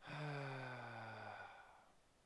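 A man's long sigh with some voice in it, its pitch sliding gently downward as it fades out just before the end: a sigh of frustration after something has gone wrong.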